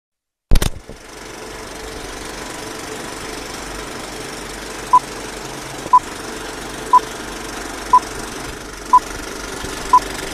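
Film countdown leader sound effect: a loud click, then the steady clatter of a film projector running, with short high beeps once a second from about halfway through, one beep per number of the countdown.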